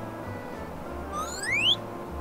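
Background music with a low pulsing beat; a little over a second in, a rising whistle-like glide sweeps up in pitch over about half a second, like a cartoon sound effect.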